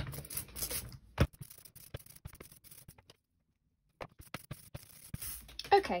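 Soft rubber brayer rolling through tacky oil-based relief ink on an inking plate: a sticky crackle of fine clicks, densest in the first second, then sparser strokes with a short silent break a little past the middle.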